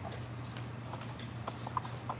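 Faint, irregular footsteps and small clicks as a person walks up to a lectern, over a steady low electrical hum.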